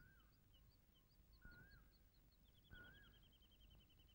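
Near silence with faint birdsong: three short warbled calls about a second and a half apart, scattered small high chirps, and a fast twittering trill over the last second and a half.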